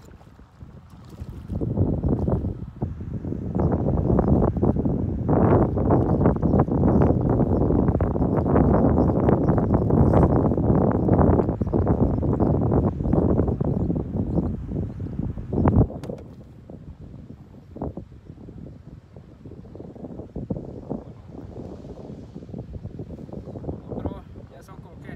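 Wind buffeting the microphone: a loud, crackling low rumble that builds over the first few seconds, then drops off suddenly about sixteen seconds in to lighter, intermittent gusts.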